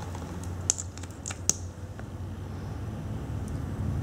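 A few small, sharp clicks and taps in the first two seconds, from makeup being handled as a lip gloss tube is picked up and opened, with one faint tick later, over a steady low room hum.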